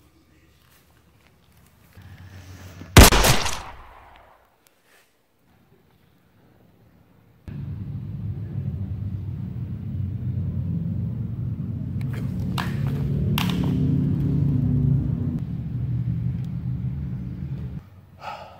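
A single loud pistol shot about three seconds in, ringing away over about a second. After a few quiet seconds a steady low drone comes in and runs on, with two sharp clicks in its middle.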